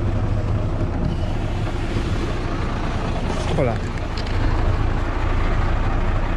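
Mercedes-Benz Actros truck's diesel engine running steadily with a low rumble.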